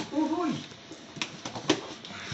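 A few sharp clicks and scrapes of a cutter working at packing tape on a cardboard box, the loudest near the end.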